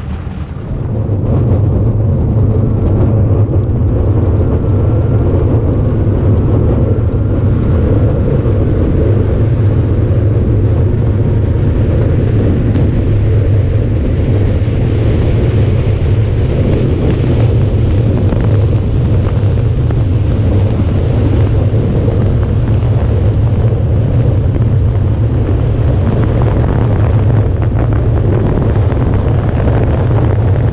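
Wind rushing over a body-mounted onboard camera on an electric streamliner under way across salt flats: a steady, heavy rumble with a hiss that grows brighter as the run goes on. A faint whine rises in pitch over the first several seconds.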